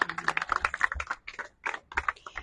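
A small group applauding, a few people's hand claps, thinning out to scattered claps about three-quarters of the way through.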